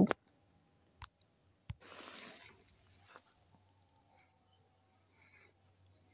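A few faint sharp clicks, two close together about a second in and another shortly after, then a short soft hiss and one more faint click, over a low steady hum.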